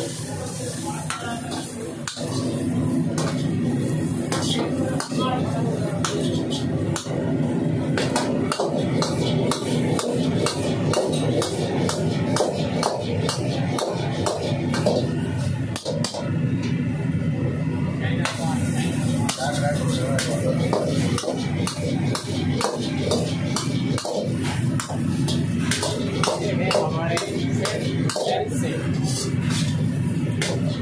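Steel ladle repeatedly scraping and clanging against an iron wok as noodles and cabbage are stir-fried, in quick irregular strikes. Background music with a voice plays throughout.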